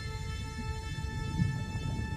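Soundtrack music: a sustained drone of several steady held tones over a low, shifting rumble.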